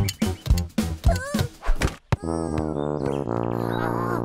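Cartoon soundtrack music and comic sound effects: a quick run of knocks with short sliding tones, then, about two seconds in, a long held low note.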